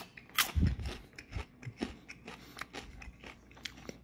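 A person chewing a mouthful of cheese and caramel popcorn, with irregular crunches, the loudest about half a second in.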